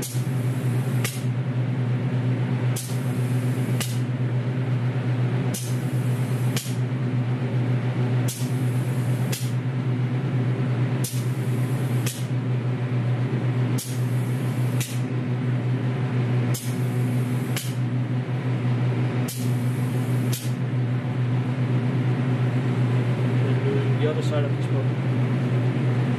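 Automatic wheel-painting booth at work: a steady low hum from the machine and its extraction fan. Over it the robot-held aerosol can sprays in short regular pulses, a pair about a second apart roughly every three seconds.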